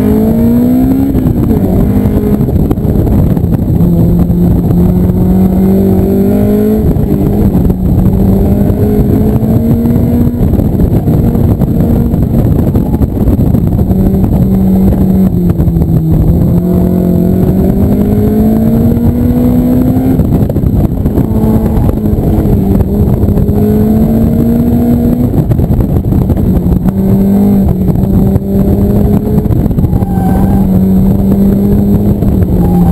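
Honda S2000 AP1's high-revving 2.0-litre four-cylinder engine at full effort through an autocross course, heard from inside the open cockpit. Its pitch rises and falls repeatedly with throttle and gear changes, over a heavy rush of air and road noise.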